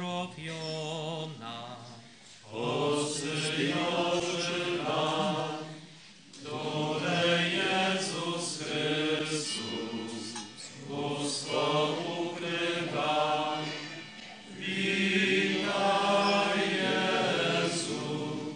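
Voices singing a slow hymn during communion at Mass, in phrases of about four seconds with short breaks between them.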